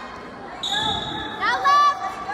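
Coaches or spectators shouting calls to a wrestler, preceded by a short, high, steady tone lasting under a second.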